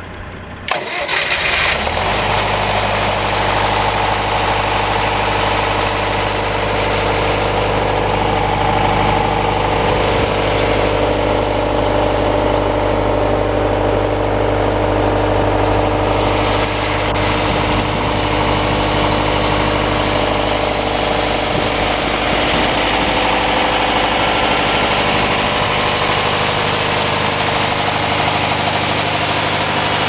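Libby Welding 10 kW diesel generator set starting up: the engine catches less than a second in and then runs loudly and steadily at a constant, governed speed.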